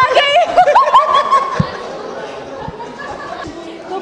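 A man and a woman laughing together, loudly for about the first second and a half, then settling into quieter voices and murmuring.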